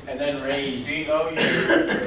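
People talking in a room, with a short, harsh burst of noise about a second and a half in.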